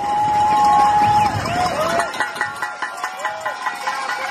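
A raised voice calls out in the first half, with one long held call near the start. About halfway through, background music with a steady pulse comes in.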